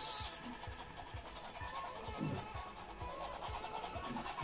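Acrylic base colour being rubbed by hand onto a stretched canvas: a faint scratchy rubbing with soft, dull knocks from the canvas as the strokes land. Faint background music underneath.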